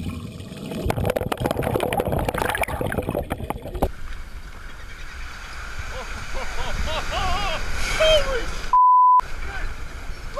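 Water rushing and crackling around a diver's camera underwater, cutting off abruptly about four seconds in. After that comes steadier water and wind noise at the surface, with excited voices of people on the boat. Near the end a short steady censor beep covers a word.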